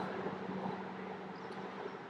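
Steady mechanical background hum with a faint held tone that fades out near the end.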